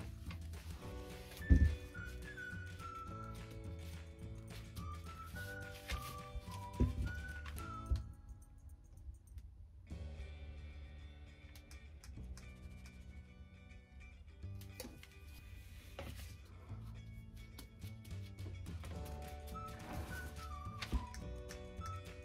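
Background music with a light melody. Two dull thumps, the loudest sounds here, come about one and a half seconds in and about seven seconds in: a metal ice cream scoop pressed down onto paper on a table to release a scoop of packed bubble bar mixture.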